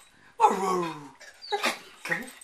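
Pit bull terrier "talking" on the command to speak: a drawn-out whining bark that starts suddenly about half a second in and slides down in pitch, then a shorter yelp about a second and a half in.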